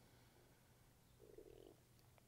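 Near silence: room tone with a faint steady low hum, and one brief faint sound a little over a second in.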